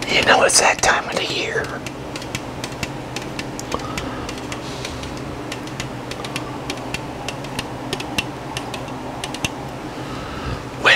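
Fingernails tapping and clicking on an aluminium beer can held close to the microphone, a scattered run of light, irregular clicks. It opens with a short, loud vocal sound from the drinker just after a sip.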